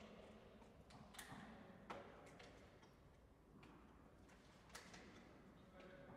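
Near silence: faint room tone with a few scattered soft clicks and knocks, the sharpest a little after one second, near two seconds and near five seconds in.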